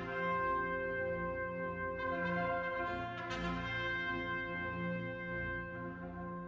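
Orchestra playing slow, sustained music with brass to the fore, French horns prominent, over repeated low chords. Brighter new entries come in about two seconds and again about three seconds in.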